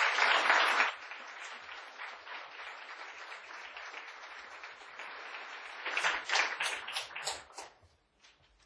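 Audience applauding, loudest in the first second, then steady, with a few louder individual claps near the end before it dies away.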